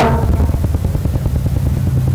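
Low, steady buzzing drone of a devotional song's instrumental accompaniment, heard in a gap between sung lines; a sung note cuts off at the very start.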